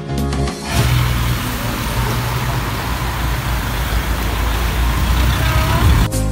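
Street traffic noise with a vehicle engine running in a low steady rumble, taking over after background music cuts off within the first second; a short rising tone sounds near the end.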